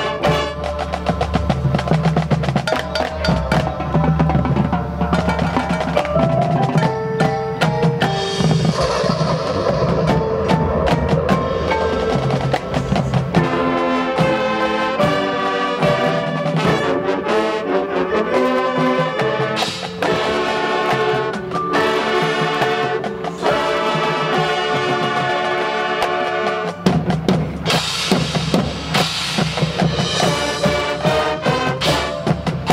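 Marching band playing: brass chords over a drumline and front-ensemble percussion, with snare-drum rolls and bass-drum hits, building to a fuller, louder passage near the end.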